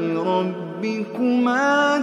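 A man's voice reciting the Quran in a melodic chant, holding long, ornamented notes. A brief break comes about a second in, then a higher note is held.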